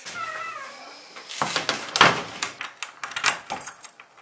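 A wooden door pulled shut and locked with a key: a faint squeak in the first second, then a run of sharp metallic clicks and clacks as the door latches and the key turns in the deadbolt, the loudest about two seconds in.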